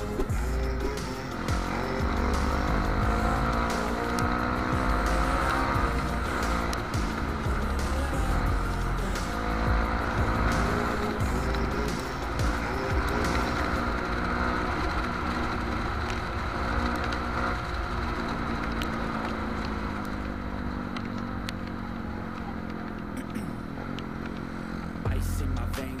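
Trail motorcycle engine running under the rider, its pitch rising and falling again and again as it accelerates and eases off in traffic, with background music underneath.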